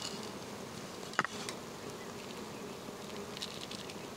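Insects buzzing steadily outdoors, with one sharp click about a second in and a few faint ticks later, as a stainless steel hand coffee grinder is handled and its top fitted.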